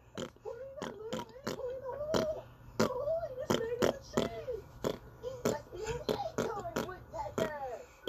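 A person beatboxing into a handheld microphone: quick mouth pops and clicks about three a second, mixed with short wavering hummed vocal sounds.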